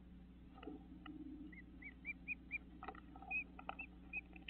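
A bird chirping: a run of short, evenly spaced arched notes, about three a second, starting about a second and a half in, with a few more near the end. Several soft ticks and taps fall among the notes.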